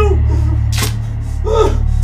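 A man's strained, wordless cries and a sharp gasping breath, the gasp about a second in and the cries rising and falling again near the end, over a steady low drone.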